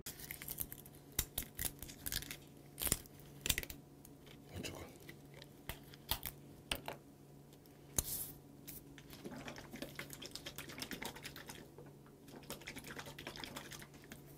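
Clicks, taps and crinkles of a plastic makgeolli bottle being handled at the cap and turned over in the hands. Sharp clicks come through the first half, then softer rustling runs for a while from about two-thirds in.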